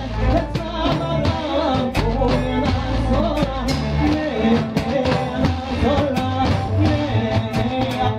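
Live band music with a steady drum beat: a man sings into a microphone over a large hand-struck drum, upright double bass, drum kit and electric guitar.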